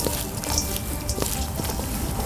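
Gloved hands tossing dressed arugula salad in a stainless steel bowl: a wet rustling with light scattered clicks, over faint background music.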